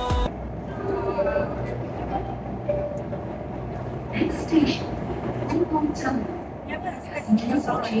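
C751C metro train running through a tunnel: a steady low hum and rumble with some faint steady tones. Voices are heard over it from about halfway through.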